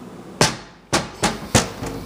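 Kitchen cabinet doors being opened and shut, giving four sharp knocks in quick succession.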